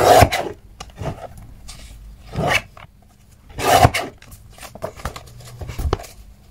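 Paper being slid and cut on a Fiskars sliding paper trimmer: three short rasping strokes, near the start, about two and a half seconds in and near four seconds, with small clicks and rustles of paper between them.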